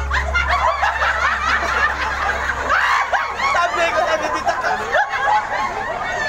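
Laughter from many voices at once: high-pitched, overlapping chuckles and giggles. Under it a low held note from the accompaniment dies away about three seconds in.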